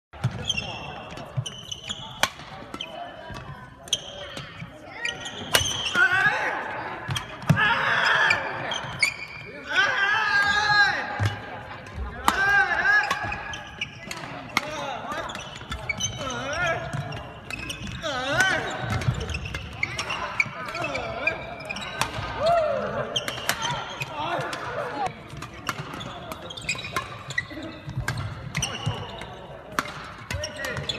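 Badminton rackets striking shuttlecocks in many sharp cracks at an irregular rapid pace from several rallies at once, with players' footwork and voices mixed in.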